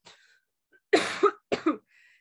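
A woman coughing twice: a longer cough about a second in, then a shorter one.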